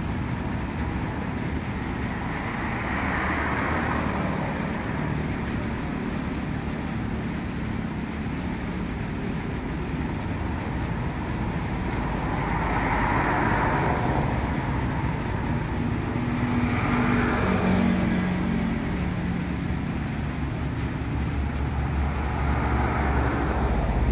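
Road traffic on a wet road, with a steady low rumble. About four vehicles pass, their tyre hiss swelling and fading, and one carries a clear engine note about two-thirds of the way through.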